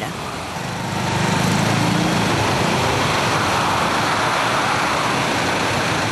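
City street traffic in a jam: the engines of cars and buses idling and crawling, over a steady wash of road noise. A low engine rumble stands out in the first two seconds, then the noise stays even.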